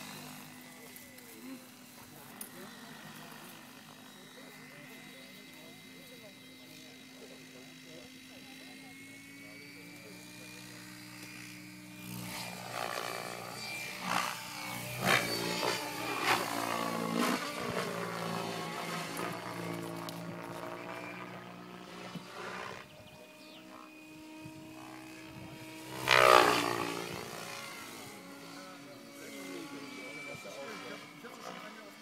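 Electric 3D RC helicopter (Henseleit TDR) flying aerobatics: a steady hum of the rotor and motor at first, then louder from about twelve seconds in with pitch rising and falling as it manoeuvres and passes. It is loudest in a sharp swell at about 26 seconds.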